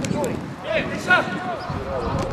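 Footballers shouting to each other across the pitch, with two sharp thuds of the ball being kicked, one at the start and a louder one about a second later.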